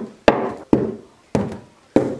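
Mugs and containers being set down one after another on a wooden dining table: four sharp knocks, roughly half a second apart.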